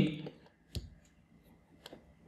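Two short, sharp clicks about a second apart, a stylus tapping on a writing tablet as words are handwritten, following the fading end of a spoken word.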